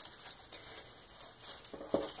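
Faint crinkling and rustling of plastic curling ribbon and foil star garland as the loops of a bow are pulled open by hand, with a couple of small clicks near the end.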